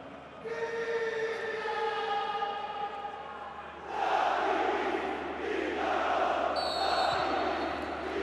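Football supporters in a stadium singing and chanting: a held sung line first, then louder massed chanting from about four seconds in. A brief referee's whistle sounds near the end.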